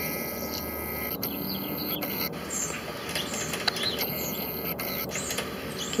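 Outdoor background noise with a few faint, high bird chirps scattered through it.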